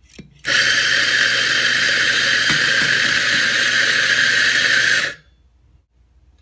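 Electric espresso grinder grinding coffee into a portafilter: a steady motor whir with a gritty grinding noise, starting about half a second in and cutting off suddenly after about four and a half seconds.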